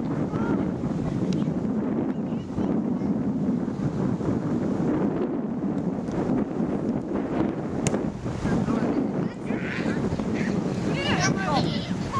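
Wind buffeting the microphone in a steady low rumble, with voices in the background and a few short shouts near the end.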